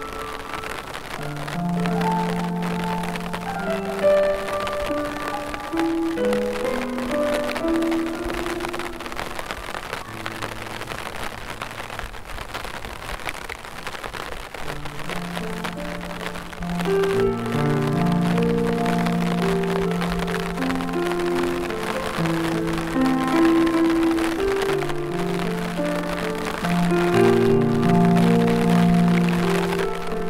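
Slow, gentle piano music over steady rainfall. The piano thins to a single low held note in the middle, and fuller chords return about halfway through.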